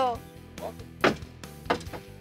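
Quiet background music with a sharp knock about a second in and a lighter one near the end, as a rider climbs into a small Ferris wheel gondola.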